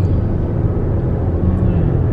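Steady low rumble of road and engine noise heard inside the cabin of a moving car.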